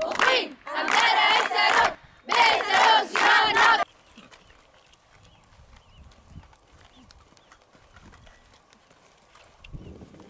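A crowd of women fighters chanting a slogan in unison, two long shouted lines with a short break between, over clapping. After about four seconds the chanting stops, leaving only faint scuffs and taps.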